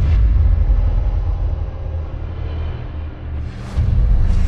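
Cinematic outro sound effects: a sudden deep boom that opens into a long low rumble, with a rising whoosh near the end.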